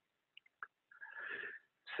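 A man's faint mouth clicks, then a soft breath lasting about half a second.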